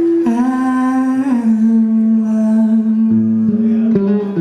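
A man sings long wordless held notes, humming-like, that step down in pitch twice before settling on a long low note. A resonator guitar plays underneath, with new low notes joining about three seconds in.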